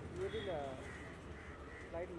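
People's voices calling out in short shouts, one about half a second in and another at the very end, over a steady background hum.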